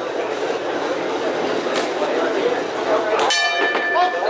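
Boxing ring bell rung once near the end, signalling the start of the round, with a ringing tone that hangs on.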